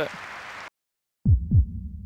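A sound-effect sting for an editing transition. The background cuts out to silence, then come two deep thuds about a quarter second apart, like a heartbeat, each falling sharply in pitch, with a low rumble fading after them.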